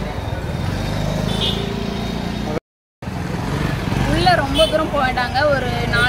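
Busy street traffic noise with a small engine running close by. About two and a half seconds in the sound drops out for a moment, and then a woman starts talking.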